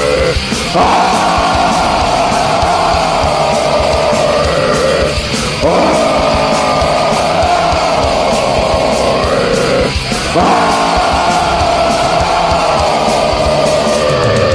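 Heavy metal band music with distorted guitars, bass and drums. A strong held melody line runs in long phrases that break off and restart about every five seconds.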